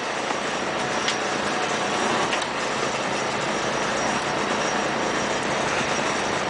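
Boat engine running steadily, a constant rumble with hiss over it, and a couple of faint ticks.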